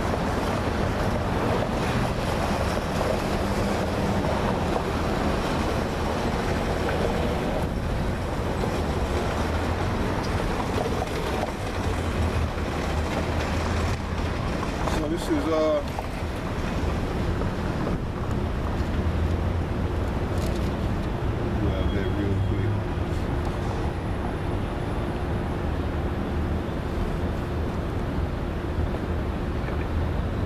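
Steady outdoor background noise of road traffic with wind rumbling on the microphone, and a brief wavering sound about halfway through.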